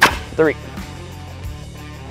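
DTX Shoulder Shot compressed-air line launcher firing once: a single sharp blast of air, charged to about 55 psi, as it shoots a throw bag and line up over a tree branch.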